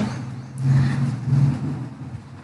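A low steady hum that swells for about a second in the middle, then fades.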